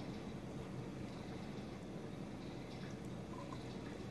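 Steady low background hum of a small room, with a few faint soft clicks.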